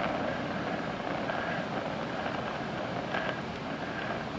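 DHC2000 oxy-acetylene torch flame with a #2 tip, at 4 psi oxygen and 4 psi acetylene, hissing steadily as it heats a cast iron intake manifold to the point where the base metal begins to flow.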